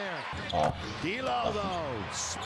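A basketball being dribbled on a hardwood arena court, with crowd noise behind, heard through the game broadcast's audio.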